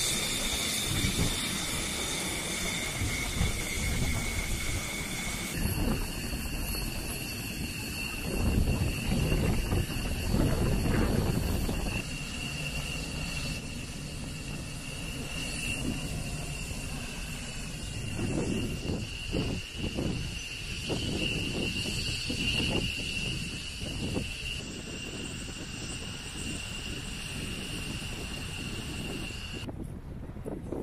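Flight-line noise of jet turbines: a steady high whine over a rushing hiss, with gusts of wind buffeting the microphone. The whine steps down to a lower pitch about five seconds in.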